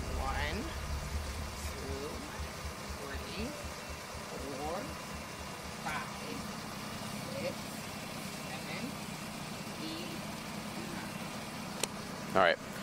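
A police car's engine idling close by, a low, steady throb, with faint speech of a woman counting her steps.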